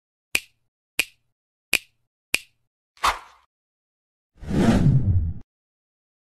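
Intro title sound effects: four sharp snaps about two-thirds of a second apart, a softer hit with a short tail, then a noisy, bass-heavy burst lasting about a second that cuts off suddenly.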